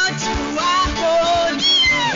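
Praise-and-worship music: a woman singing into a microphone over a band with a steady drum beat, her voice sliding through a high note near the end.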